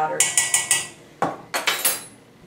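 Metal measuring spoon tapping and clinking against a stainless steel mixing bowl: a quick run of about four light metallic taps, then a few more clinks near the end.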